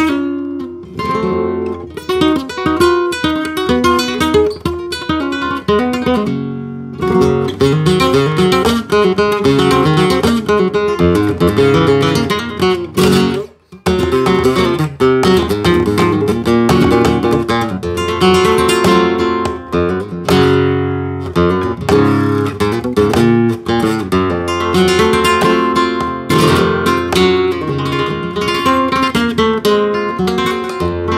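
Solo nylon-string flamenco guitar playing a soleá, with runs of plucked notes and strummed chords and a brief pause about halfway through.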